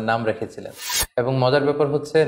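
A man speaking, broken about a second in by a short harsh hiss that stops abruptly, followed by a moment of silence before his voice resumes.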